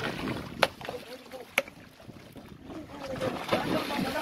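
A hooked yellowfin tuna being hauled alongside a small fishing boat on a handline: two sharp knocks about a second apart, then water splashing at the surface near the end. Men's voices and wind on the microphone run underneath.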